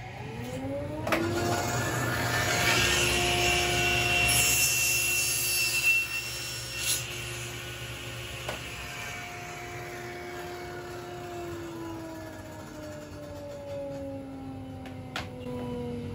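Table saw starting up and spinning to speed. It then cuts a partial-depth kerf across a block of wood on a crosscut sled for a few seconds, louder and ringing during the cut. The saw is switched off and the blade winds down with falling pitch over the last few seconds.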